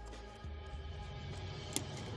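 Soft background music with steady held tones. One sharp click near the end, as plastic toys are handled on a wooden table.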